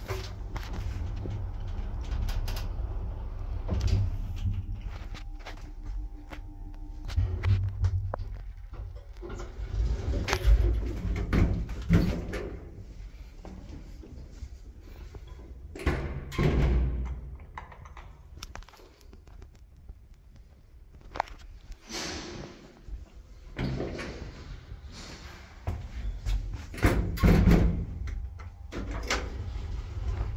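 1989 IFMA traction elevator in use: a low rumble with a faint steady hum from the running car. Then a series of loud clunks and thuds from its sliding doors, which come several times over the second half.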